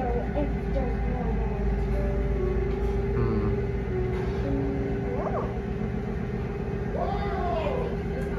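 Old traction elevator running, a steady low rumble under a constant hum. A few short high sounds rise and fall over it, around the middle and near the end.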